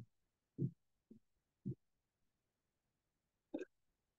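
Mostly quiet video-call audio broken by four short, faint low sounds in the first two seconds and one brief sound near the end.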